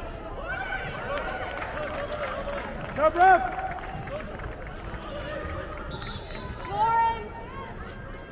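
Many overlapping voices calling and shouting across an indoor soccer dome during a youth match, with two louder shouts, one about three seconds in and one near the end.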